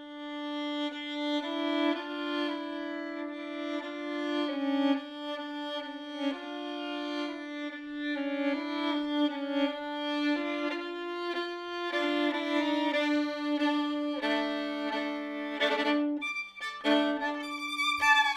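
Solo violin, bowed, coming in right after a short silence. It holds one low note steadily while changing notes sound above it in double stops. A lower note joins the held one about three-quarters of the way through.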